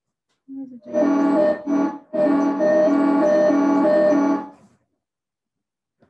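Music From Outer Space Weird Sound Generator kit synth played through a guitar amp: a loud, buzzy tone rich in overtones, its pitch stepping back and forth between two notes. It breaks off briefly near two seconds in and then cuts off suddenly, the dropouts blamed on a bad cable.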